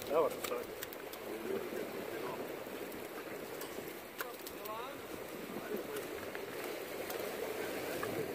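Steady wash of wind and surf against the rocks of a jetty, with people's voices in the background and a few brief rising calls.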